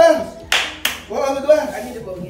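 Two sharp hand claps about a third of a second apart, amid excited shouting voices.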